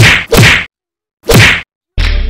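Fight sound effects dubbed onto the scene: three sharp whacks, one at the start, one about half a second in and one about a second and a half in, with dead silence between them.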